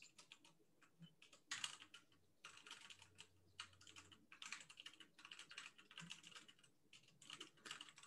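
Faint computer keyboard typing: rapid runs of keystrokes as a sentence is typed, starting about a second and a half in and continuing with short pauses.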